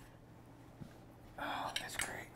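Quiet room tone with a small knock, then about a second and a half in a brief whispered remark.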